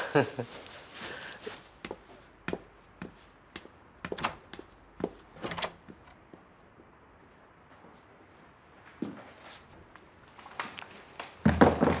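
Footsteps and light knocks on a wooden floor, scattered over a few seconds, then one more knock after a pause; a woman speaks briefly near the end.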